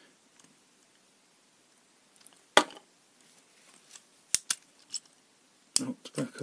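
Metal clicks from a lever padlock and lock-picking tools being handled: one sharp click about two and a half seconds in, then a few lighter clicks and taps near the end.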